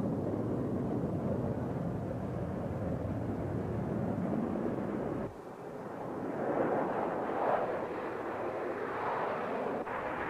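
Jet aircraft engine noise: a steady low rumble that cuts off suddenly about halfway through, followed by a higher, louder rushing jet noise that builds in swells.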